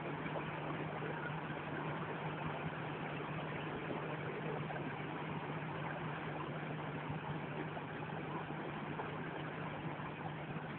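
Water rushing and churning in a stone canal lock chamber as it is let through the sluices: a steady rush with a steady low hum beneath it.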